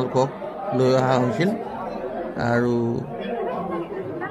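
Speech only: people talking, with chatter of several voices in a large hall.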